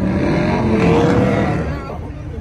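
A car engine revving hard with a loud, rough rush of noise, the pitch climbing about a second in before easing off near the end, as a car does a burnout.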